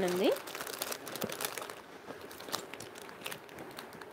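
Clear plastic jewellery packet crinkling as it is handled in the fingers: many small, irregular crackles.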